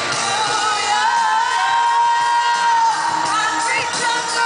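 A live hip-hop concert recorded in an arena: over the band, a singer holds one long high note, then slides through shorter notes, with the crowd cheering underneath.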